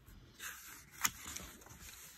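Page of a hardcover picture book being turned by hand: a soft paper rustle with one sharp tap about a second in.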